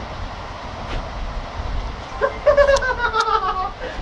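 A low rumble, then about two seconds in a person's long high-pitched vocal call that falls slightly in pitch and lasts a second and a half, amid laughter and jeering.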